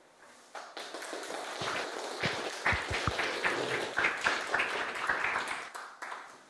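Audience applauding at the end of a talk. The clapping starts about half a second in and dies away near the end.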